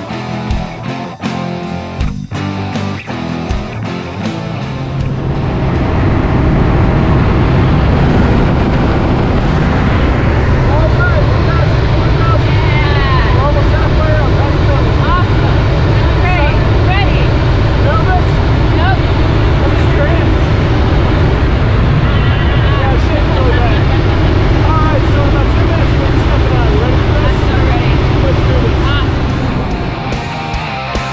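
Rock music over the first few seconds, then the loud, steady drone of a single-engine light aircraft heard from inside its cabin during the climb, with voices talking over it.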